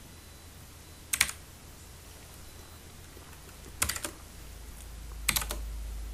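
Computer keyboard being typed on in three short bursts of a few keystrokes each: about a second in, near four seconds, and at about five and a half seconds.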